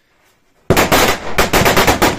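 Firecrackers going off on the ground: a rapid string of loud, sharp bangs that starts suddenly a little under a second in, after a quiet moment, and keeps going.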